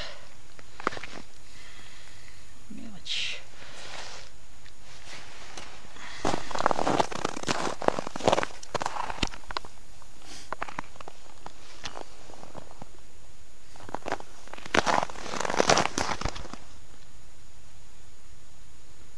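Boots crunching and shuffling on snow and broken, slushy ice in two spells of dense crackling, one about six seconds in lasting several seconds and a shorter one near fifteen seconds.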